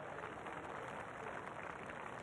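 Faint steady hiss of room tone, with no distinct sound.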